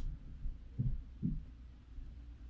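Four faint, soft, low thumps, spaced irregularly over a second and a half.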